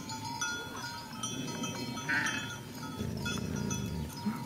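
A flock of sheep with many small bells ringing unevenly and sheep bleating now and then, over a steady low rumble.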